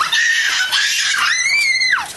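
High-pitched human screaming: one long shriek held for about two-thirds of a second, then a second shriek that rises and falls near the end.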